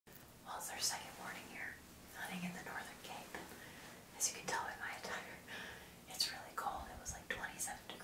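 A woman talking in a whisper, in short broken phrases with hissy consonants.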